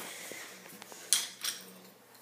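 Quiet rustle and handling noise from a handheld phone being carried, with two short soft swishes about a second in, half a second apart.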